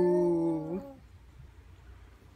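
A person's voice holding a long howl-like animal imitation that sinks slightly in pitch and ends with a short upward turn just under a second in, after which there is only quiet room sound.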